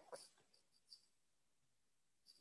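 Near silence: faint room tone over a video call, with a few faint, brief, high sounds in the first second.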